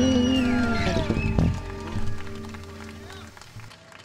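Electric bass guitar playing the last notes of a funk tune. A held chord rings out, a couple of short plucked notes come between one and two seconds in, and the sound dies away steadily toward the end.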